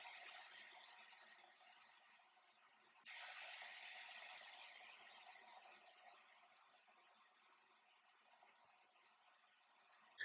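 Near silence: a faint hiss that fades away, returns suddenly about three seconds in, then fades out again.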